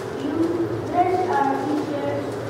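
A child's voice speaking into a microphone in a hall.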